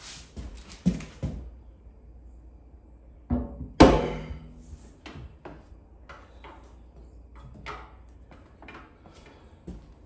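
Foley Belsaw knife sharpener set down onto its red metal stand: a loud double metallic clunk about three and a half seconds in that rings on briefly. Smaller knocks and clicks of handling come before and after it.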